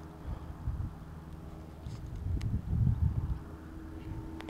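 Low rumble of wind and handling on the microphone as gloved hands work a small clod-covered find with a wooden stick, swelling a little in the second half, with a faint steady hum and one small click.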